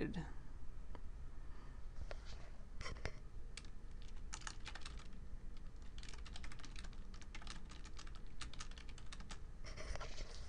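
Typing on a computer keyboard: a run of irregular key clicks that starts about two seconds in and grows quicker and denser later, as a short sentence is typed.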